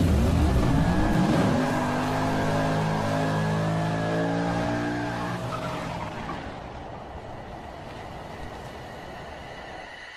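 Car engine sound effect: the revs rise in pitch over the first second or so, hold steady, and then fade away over the next few seconds.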